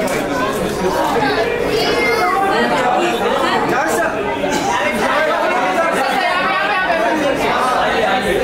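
Overlapping chatter of several people talking at once, with no single voice standing out.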